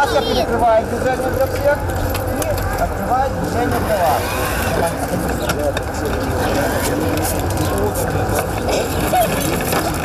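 Outdoor hubbub of children's voices, short calls and chatter from several people at once, over a steady low background noise.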